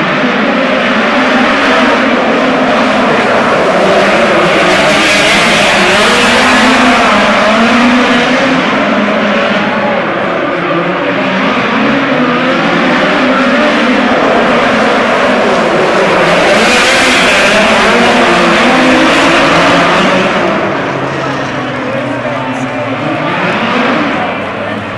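Two midget race car engines running hard around a dirt oval, their pitch rising and falling as they accelerate down the straights and ease off into the turns. The engines drop off somewhat near the end.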